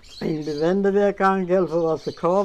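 An elderly woman speaking, continuous talk in a wavering voice.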